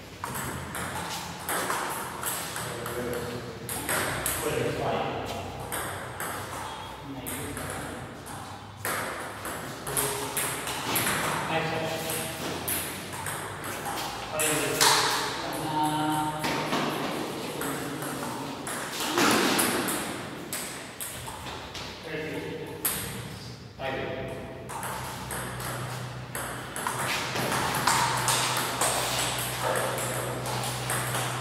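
Table tennis ball clicking off rubber paddles and the tabletop in quick exchanges during rallies, with voices talking between points.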